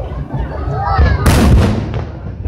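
Aerial firework shell bursting with one loud bang a little past one second in, fading over about half a second, over a steady low rumble from the display.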